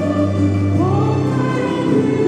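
A woman and a man singing a classical-style duet into microphones over instrumental accompaniment. The voices hold long notes with vibrato, and one slides up to a higher note a little under a second in.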